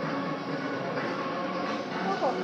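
Steady background noise of a shop floor, an even hum with no sudden sounds.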